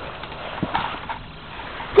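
Faint scuffing and crunching of a boot on snow and ice in a frozen metal water pan, with a couple of soft knocks near the middle.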